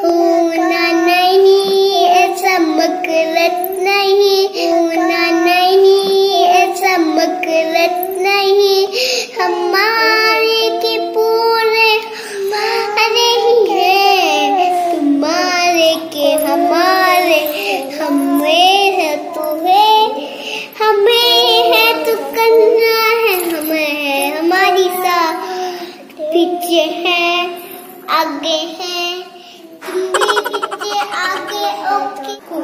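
Young girls singing a song in high children's voices, the notes held and sliding in pitch, with short pauses between phrases.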